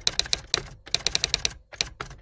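Typing sound effect: rapid key clicks, about ten a second, in quick runs broken by short pauses.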